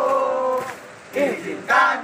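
Group of men singing a marching song in unison. A long held note ends just under a second in, and after a short break the next line begins near the end.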